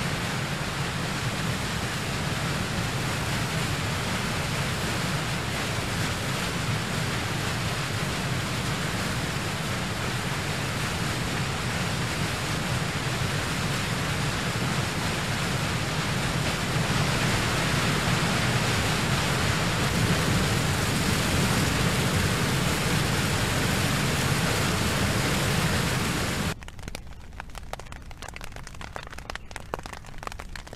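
Steady rush of falling water from a large waterfall. Near the end it cuts off suddenly to a much quieter outdoor ambience with faint scattered ticks.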